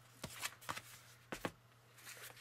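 Paper pages of a small hardback children's book being fanned and handled: a few faint, short paper flicks and rustles.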